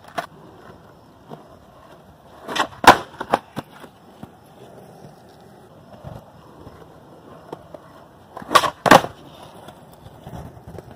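Skateboard wheels rolling on concrete, broken by two bursts of sharp wooden clacks, about three seconds in and again near the end, as the board slaps the ground and is landed on during varial finger flip attempts.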